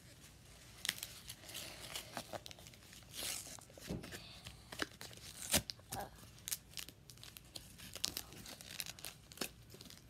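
Foil Pokémon booster pack wrapper being torn open and crinkled by hand, an irregular run of crackling rips and rustles.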